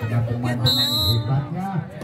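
A referee's whistle blown once, a short shrill blast of about half a second near the middle, as the signal to serve, over voices from the crowd.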